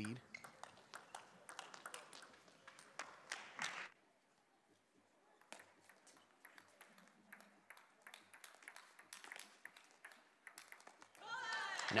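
Faint sharp ticks of a table tennis ball struck by bats and bouncing on the table during a rally, a quick irregular series of clicks in a large hall. A first scatter of clicks is followed by a brief near-silent gap before the rally starts.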